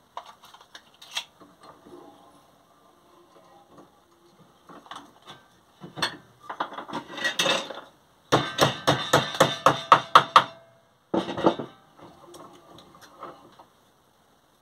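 A hammer striking a thin steel strip clamped in a bench vise, bending it to shape for a handle. The loudest part is a quick run of about a dozen sharp blows over two seconds past the middle, with lighter taps and scraping before it and one more short burst after.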